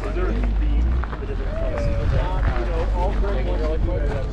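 Several people talking nearby, with a steady low rumble underneath.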